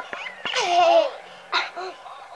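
A young child laughing: one high squealing laugh that falls in pitch about half a second in, then a couple of short giggles near the end.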